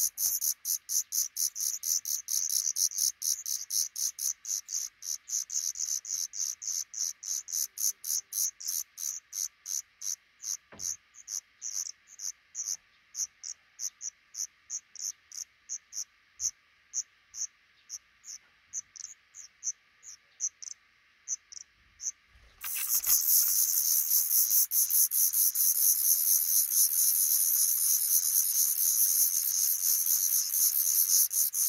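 Black redstart nestlings begging: a rapid series of thin, very high-pitched calls that grow fainter and sparser over about twenty seconds. About 23 seconds in, the begging suddenly breaks out loud and continuous as a parent comes back to feed them.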